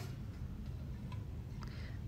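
Low store background hum with a few faint, light clicks of an aluminum platter being lifted off a chrome wire shelf.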